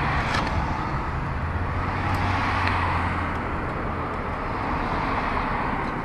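Road traffic noise: a steady rush of passing vehicles, with a low engine drone swelling and fading in the middle.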